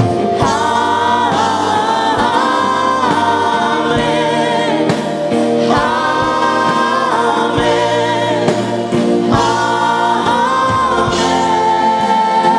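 Live gospel worship song: several singers on microphones singing together in long held phrases, with band accompaniment.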